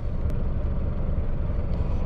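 Large diesel truck engine idling: a steady low rumble heard inside the cab.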